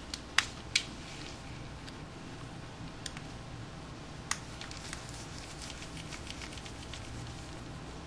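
Faint clicks and ticks of a precision screwdriver backing small screws out of a compact digital camera's body, with a few sharp clicks in the first second, another single click about four seconds in, and a scatter of fainter ticks after it.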